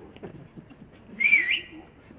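A man whistles once, a short, wavering whistle about a second in: a shepherd's whistle to call the old shepherd.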